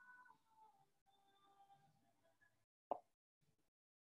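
Near silence with faint held tones, broken by a single short, sharp pop just under three seconds in.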